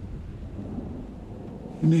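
A low, steady rumble from the film's soundtrack, with a man's voice starting up near the end.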